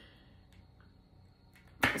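Tarot cards being handled on a table: a few faint ticks, then a short, sharp rustle of cards near the end.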